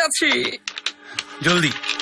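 Game pieces clicking on a board as they are moved, a quick run of small sharp clicks in the middle.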